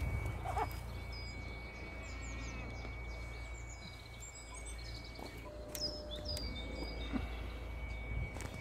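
Outdoor ambience of birds chirping intermittently over a steady low rumble, with a thin steady high tone that drops out briefly past the middle.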